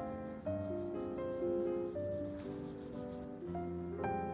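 Small metal blade scraping the surface of an oil painting in quick, repeated strokes that stop a little past three seconds in, over soft piano music.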